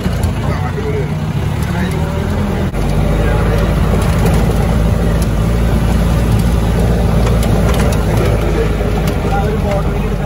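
Jeep engine running steadily under load while driving over a rough dirt track, heard from on board. Its low rumble grows louder about three seconds in.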